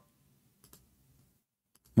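Faint clicking at a computer: two quick clicks about two-thirds of a second in, and a few fainter ones near the end, as the web page on screen is switched.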